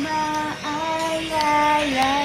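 A woman singing solo, holding about three long sustained notes with brief breaks between them.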